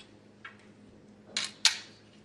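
A faint click, then two sharp clicks close together about a second and a half in, the second the loudest.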